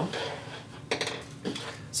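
Handling noise as crocheted work and its hook are set aside on a table: a soft rustle, then a few light clicks and knocks, the last as a pencil is picked up.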